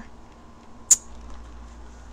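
Quiet room tone with a faint low hum, broken by one short, sharp high-pitched click about a second in.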